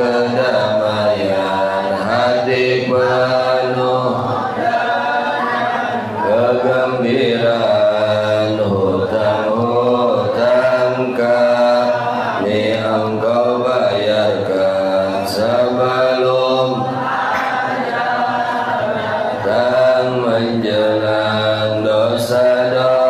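A man's voice chanting through a microphone in long, drawn-out melodic phrases, held and bending notes with only brief breaks, over a steady low hum.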